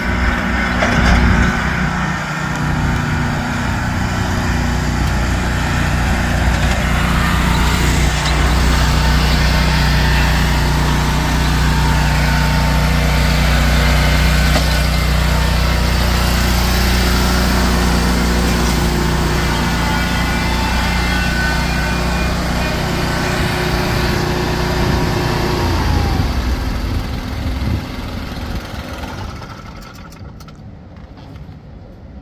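Toro Grandstand HDX stand-on mower's engine running steadily as the mower is driven, quietening over the last few seconds.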